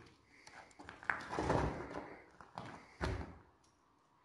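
A few knocks and bumps, the loudest a sharp thump about three seconds in.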